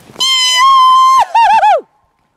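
A loud, high-pitched call, most likely a voice: one long held note, then three short hoots that each fall in pitch, the last sliding well down. It is made to raise an echo.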